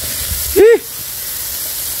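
Beef satay skewers sizzling on a charcoal grill, a steady hiss. A short voiced 'uh' about half a second in is the loudest sound.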